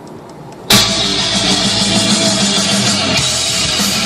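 Guitar-driven rock music with drums playing loudly over a car's factory stereo speakers. A quiet passage at the start gives way to the full band kicking in abruptly less than a second in.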